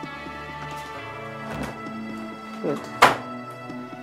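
Background music with sustained tones, broken by a single sharp thud about three seconds in, a door being shut.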